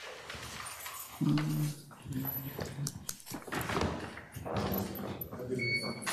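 Courtroom room noise of people moving: rustling, shuffling and handling sounds, with a short voice sound about a second in.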